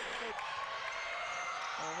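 Basketball game sound in a gym: a steady crowd murmur with the ball bouncing on the court.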